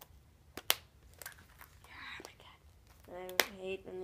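A few sharp plastic clicks and light rustling as a small plastic Easter egg is handled and opened, two of the clicks close together a little over half a second in. A voice starts about three seconds in.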